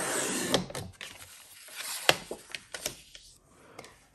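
Sliding-blade paper trimmer cutting across a sheet of patterned paper: about a second of steady scraping hiss as the blade carriage is pushed through. After it come quieter rustles and clicks of paper being handled, with one sharp tap about two seconds in.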